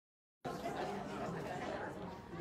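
Indistinct chatter of many people talking at once in a large hall, a church congregation milling about. It cuts in suddenly about half a second in.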